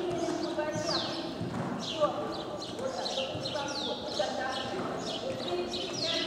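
Hoofbeats of ridden Akhal-Teke horses moving on the soft sand footing of an indoor arena, mixed with indistinct voices.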